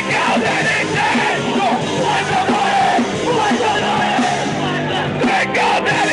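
Live punk rock band playing loud, with shouted vocals over guitars and drums.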